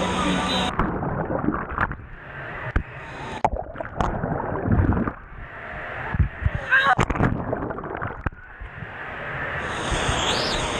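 Wave-pool water sloshing and splashing over a waterproof camera. After about a second the sound turns muffled as water covers it, with irregular sharp knocks of water striking it. Near the end the open pool noise with voices returns.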